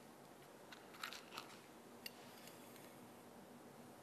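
Near silence with a few short faint clicks and crackles, about a second in and again around two seconds in, as a burning match is held to the wick of a glass spirit burner and the wick catches.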